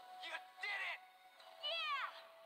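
Animated-film soundtrack: a steady held synth note, with about three short high-pitched sounds over it, each sliding down in pitch.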